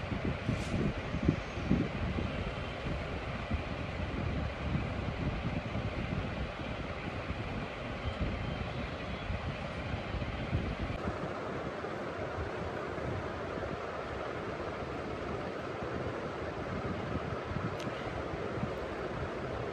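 Steady rushing noise of moving air on a phone microphone, with a few low bumps in the first two seconds. The low rumble eases about eleven seconds in.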